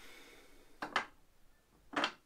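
Two short, faint clicks or knocks from a beer can being handled, one about a second in and one near the end, as fingers pick at the aluminium can's ring-pull.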